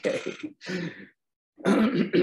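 A man laughing briefly and clearing his throat.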